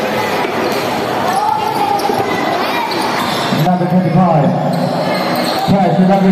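Basketball bouncing on a gym floor amid the echoing noise of a game in a large hall. A voice holding long, drawn-out notes comes in over it a little past halfway.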